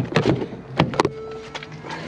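Car door handling as someone gets into a car: a quick run of sharp clicks and knocks, then a short steady hum about halfway through.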